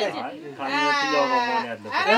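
A person's long, drawn-out, wavering vocal cry, held for about a second and a half and sliding slightly down in pitch, following a brief spoken word.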